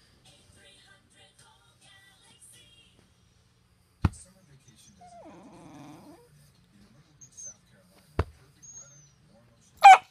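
A beagle growls low for about a second, then gives one short, loud bark near the end. Two sharp clicks come before, at about four and eight seconds in.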